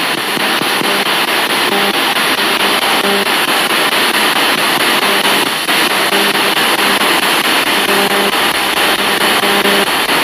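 A dual-channel spirit box (ghost box) radio sweeping the FM band: a loud, steady hiss of static broken by short snatches of radio sound as it jumps from station to station.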